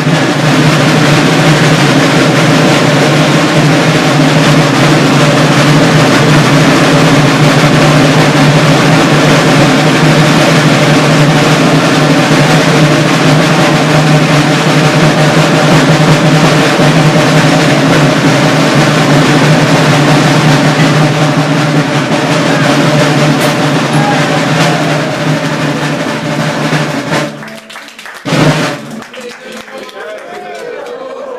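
Marching drums playing a long, loud, steady roll, which cuts off abruptly near the end and is followed by one brief loud burst.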